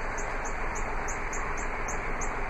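Steady outdoor background hiss with a short high chirp repeating about three times a second.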